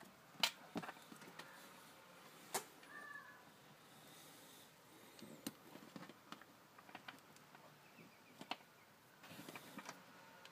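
Faint, scattered clicks and taps of charger leads and plug connectors being handled and plugged in to hook a LiPo battery up to a balance charger, in an otherwise quiet room.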